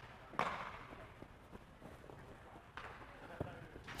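Faint, scattered knocks from a baseball fielding drill, baseballs meeting gloves and turf and players' running steps, with echo in a large indoor hall. The sharpest knock comes about half a second in, with a few softer ones near the end.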